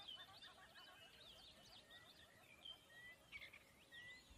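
Near silence, with faint birdsong: many short, high chirps running throughout and a few slightly louder ones near the end.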